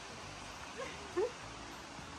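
Steady hiss of rain and a rushing mountain stream. Two brief, faint rising calls sound about a second in.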